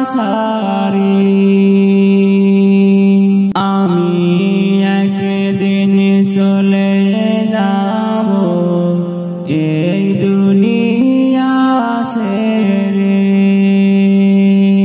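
Wordless sung interlude of a Bengali Islamic gajal: voices hold long, drawn-out notes, stepping from one pitch to the next, with short breaks about three and a half and nine and a half seconds in.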